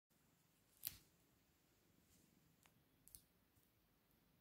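Near silence with a short sharp click about a second in and two or three fainter clicks near the three-second mark.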